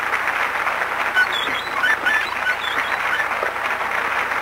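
A small group clapping steadily, with a few faint voices mixed in.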